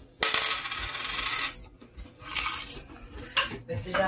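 A US nickel tossed for heads or tails lands on a wooden table with a sharp clink and spins, making a rapid metallic rattle for over a second. A shorter burst of rattling follows about two seconds in.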